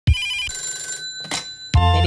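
Telephone ring sound effect opening a sped-up pop song: a short trilling ring, then a steady electronic tone about a second long, before the bass and the song's music come in near the end.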